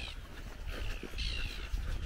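Birds calling in a few short, high, falling chirps over a steady low rumble.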